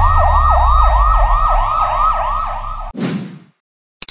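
Rapid yelping siren sound effect in the style of a police car, its pitch swooping up and down about three times a second for some three seconds. It ends in a short falling swoosh about three seconds in.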